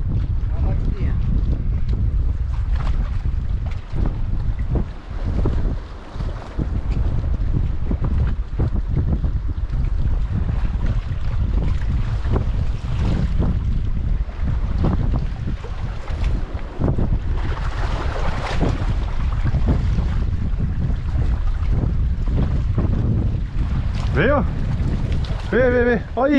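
Wind buffeting the microphone, a steady low rumble with gusts, over water washing against shoreline rocks.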